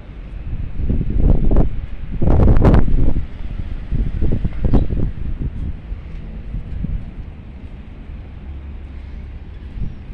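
Wind buffeting the microphone in gusts, loudest from about one to three seconds in and again around four to five seconds, then settling to a lower rumble.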